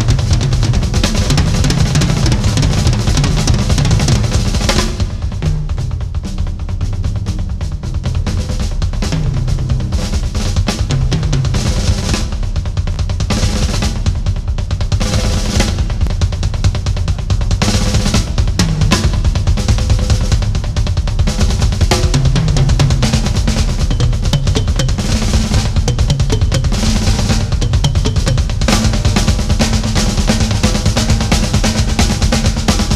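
Drum kit with double bass drums: a continuous stream of fast bass drum strokes from both pedals under tom and snare fills, with cymbal crashes here and there. It gets a little softer about five seconds in, then builds back up.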